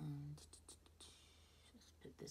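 Faint scratchy strokes of an eyeshadow brush sweeping powder across the eyelid, a few quick strokes and a short brushing hiss. They follow the tail of a brief hummed voice at the start.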